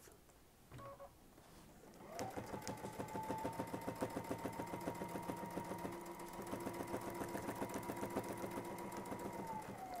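Domestic sewing machine stitching ruler-work quilting along an acrylic template: it starts about two seconds in, picks up speed briefly, then runs steadily with a motor whine and rapid needle strokes, slowing to a stop near the end.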